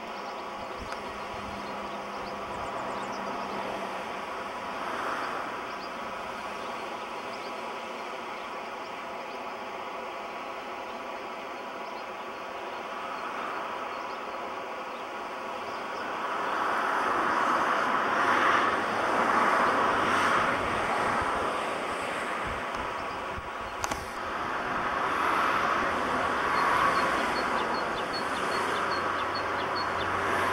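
Road traffic passing: a steady rush of vehicle noise that swells louder twice in the second half as vehicles go by.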